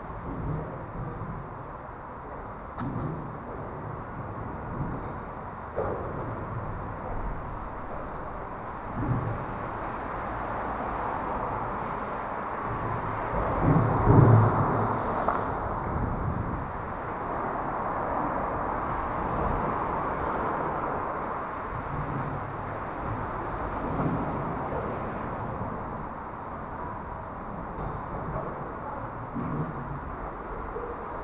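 Steady outdoor background rumble with scattered short knocks, the small radio-controlled rock crawler's tyres and plastic body knocking on rock. A louder swell with a deep thump comes about fourteen seconds in.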